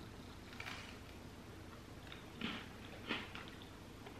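Faint chewing of a soft, chewy baked cookie, a few quiet short mouth sounds over room tone.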